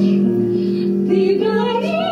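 A woman singing a slow, wavering melody over a steady held note of instrumental accompaniment.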